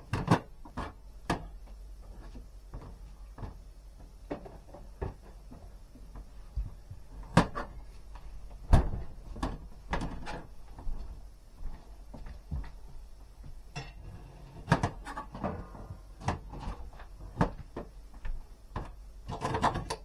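Kitchen knife knocking and scraping on a chopping board while fresh ginger is peeled: irregular sharp clicks and taps, with two louder knocks about 7 and 9 seconds in.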